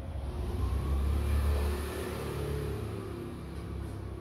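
A car engine running nearby, swelling to its loudest about a second and a half in, then fading.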